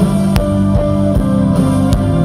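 Live rock band playing a song: electric guitars and keyboard over drums, with chords changing every half second or so and a couple of sharp drum hits.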